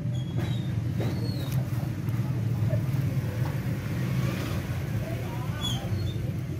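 A steady low mechanical drone, like an engine running, holding level throughout.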